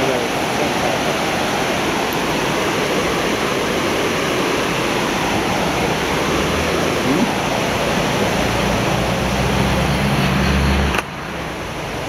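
Rushing mountain river whitewater: a loud, steady rush of water. A low hum joins in from about eight seconds, and the level drops sharply about eleven seconds in.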